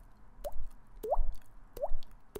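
Water-drop sounds made with the mouth, a finger flicking the cheek while the lips are held rounded. Three short plops, each rising in pitch like a falling drop, about two-thirds of a second apart.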